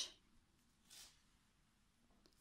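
Near silence: quiet room tone, with one faint, brief hiss about a second in.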